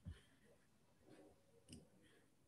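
Near silence with a soft thump right at the start and a faint click near the end: computer mouse clicks while a recorded video is being started in a media player.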